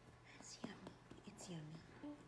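Near silence: quiet room tone with a few faint ticks and a soft, low falling sound about one and a half seconds in.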